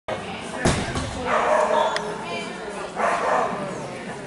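A small dog barking among people's voices, with a sharp knock about two-thirds of a second in.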